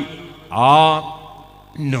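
A man preaching in a sing-song, intoned delivery: one long, drawn-out syllable about half a second in, its pitch rising then held, then a short pause before the next phrase starts near the end.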